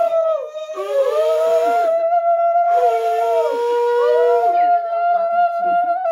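Several women ululating together in the Bengali ulu, long overlapping high calls held at different pitches with brief breaks for breath. It is the sound made to mark an auspicious rite.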